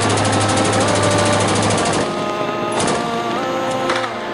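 Belt-fed PK-type machine gun firing one long automatic burst of rapid, evenly paced shots that stops about halfway through, then short bursts near the end. Background music runs underneath.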